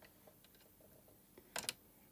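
Near silence with faint room tone, broken by a couple of brief clicks about one and a half seconds in.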